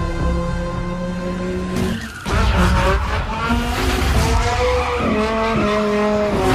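Sports car engine running hard with tyres skidding, mixed with loud trailer music; the sound drops out briefly about two seconds in, then comes back.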